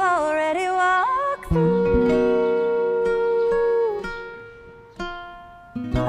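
Live acoustic music: a woman's singing voice over acoustic guitars, with a long steady note held for a couple of seconds. The strings then ring out and fade, and a fresh pluck sounds before the singing comes back near the end.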